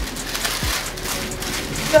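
Rustling of plastic shopping bags being handled, a steady crinkly hiss, over background music with a deep beat about three times every two seconds.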